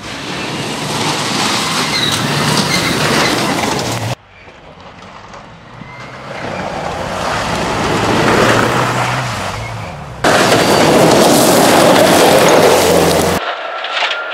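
Subaru WRX STI rally car's turbocharged flat-four running hard at speed over a gravel stage, its engine note mixed with the noise of tyres on loose gravel. The sound comes in three abrupt cuts at about four and ten seconds in. In the middle cut it swells as the car approaches and passes, then fades.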